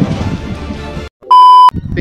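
Background music cuts off about a second in, and after a brief gap comes one short, very loud, high single-pitched electronic beep lasting under half a second. It is an edited-in beep marking the cut between clips.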